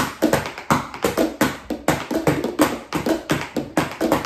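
Plastic disinfecting-wipes canisters, one a Clorox canister, drummed with thin sticks by two players: a fast, dense pattern of sharp hollow taps, several a second.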